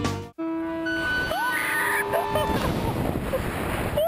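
A rock music soundtrack cuts off right at the start. After that comes rushing wind noise on the camera's microphone under an open parachute canopy, with a few steady held tones and a short rising cry about a second in.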